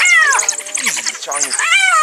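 Spotted hyenas and African wild dogs calling in a fight over a carcass: two drawn-out calls, the first falling in pitch at the start and the second rising then falling near the end, over rapid high-pitched chittering.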